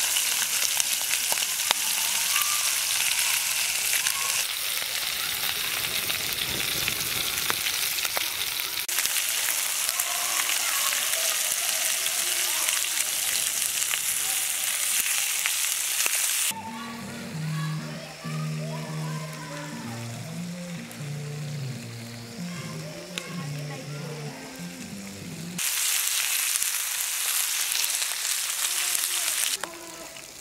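Fish steaks frying in oil in a black frying pan, a steady loud sizzle. About halfway through, the sizzle drops away for some nine seconds under background music with a low, stepping bass line, then comes back near the end.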